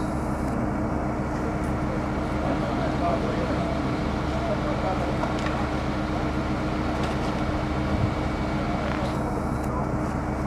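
Steady hum of an aerial ladder fire truck's engine running, with faint voices over it.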